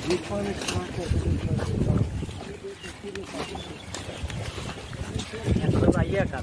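Indistinct voices of people talking, with low rumbling surges about two seconds in and again near the end.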